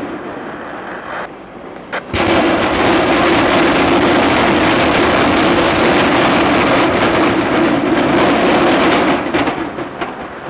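Building implosion: an old refrigeration building collapsing after its demolition charges fire. A sharp bang about two seconds in is followed by a loud, sustained crashing and crackling of falling structure and debris, which fades near the end.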